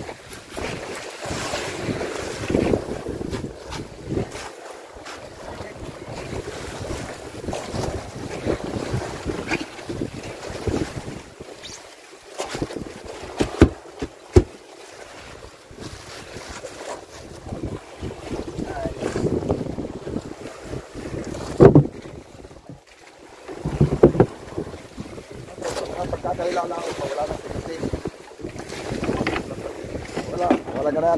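Wind buffeting the microphone over the sea around a wooden outrigger fishing boat, with scattered knocks and clatter of gear on the deck; a few sharp knocks stand out in the middle and later on.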